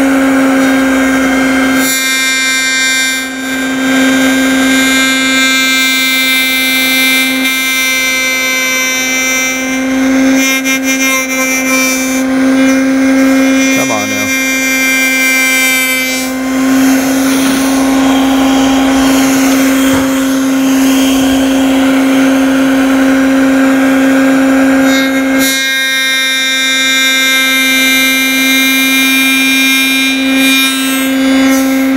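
Table-mounted router running at full speed with a steady high whine, its Wood River 45-degree lock miter bit cutting the profile into the edge of a poplar board as it is pushed along the fence. The sound of the cut adds to the whine from about two seconds in until a few seconds before the end.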